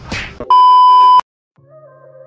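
A short whoosh, then a very loud, steady, high-pitched electronic beep of under a second that cuts off abruptly, like a censor bleep. After a brief silence, soft background music starts.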